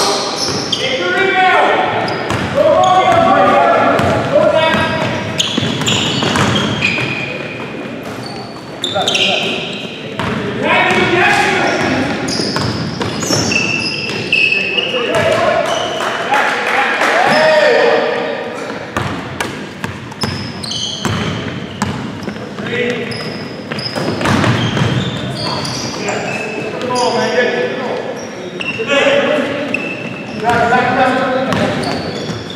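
Basketball game in a gymnasium: players' voices calling out across the court, with the ball bouncing on the hardwood floor and sharp knocks, all echoing in the large hall.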